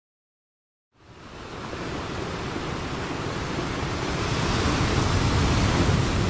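Silence for about a second, then the steady wash of a sea ambience fades in and slowly grows louder.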